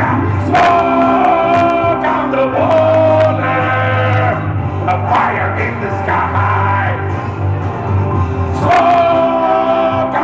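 Live rock band playing loud, with long held, wavering high notes over the band about half a second in and again near the end.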